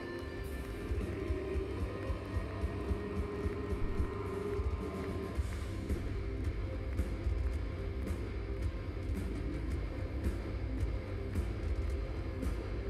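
Live metal band playing loud through a concert PA, heard from the crowd: heavy, dense low guitar and bass with a drum beat that comes in about a second in, hitting roughly two to three times a second.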